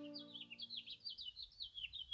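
A small bird chirping, a fast run of short, high, downward-slurred chirps, about seven a second.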